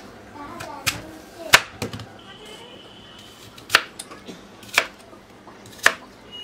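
Kitchen knife cutting an apple on a wooden chopping board: about six sharp, irregular knocks as the blade goes through the fruit and strikes the board, the loudest about a second and a half in and just before the end.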